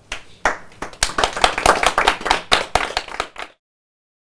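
Small audience applauding, the clapping starting about half a second in and cut off abruptly near the end.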